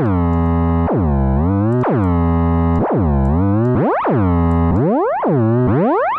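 Synth bass notes from a sample in Ableton Live's Simpler, each shaped by a strong pitch envelope and coming about once a second. The first notes start high and drop quickly to the bass pitch. From about halfway through, each note sweeps up and back down, as the envelope's attack is lengthened.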